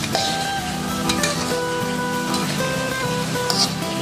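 Background music led by guitar, over the sizzle of spring rolls deep-frying in oil in a wok.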